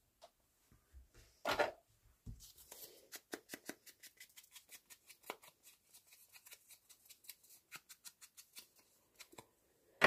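Soft, rapid dabbing and rubbing strokes of a foam-tipped ink applicator along the edges of a small cardstock piece, several strokes a second. There is a brief louder handling knock about one and a half seconds in.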